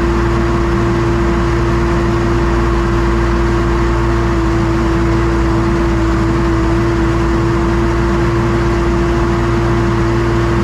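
Two John Deere tractors running steadily under PTO load, one driving the silo blower and one the self-unloading forage wagon as haylage is fed into the blower. There is a low, steady machine rumble with a steady whine held over it.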